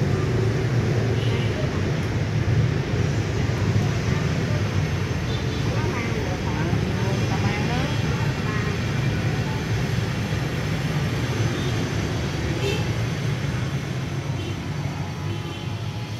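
Steady low rumble of city street traffic, easing slightly near the end, with faint unintelligible voices in the background.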